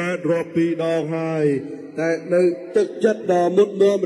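A man's voice speaking Khmer in a drawn-out, sing-song delivery like a chant, with some syllables held on one pitch.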